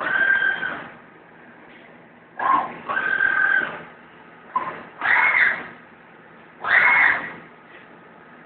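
Milling cutter of a Deckel Maho DMP 60S CNC machining centre squealing as it cuts, in about five bursts of under a second each, spaced a second or two apart, each with a steady high pitch.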